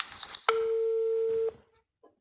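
A brief bit of speech, then a steady electronic beep: one plain tone that starts abruptly about half a second in and cuts off about a second later.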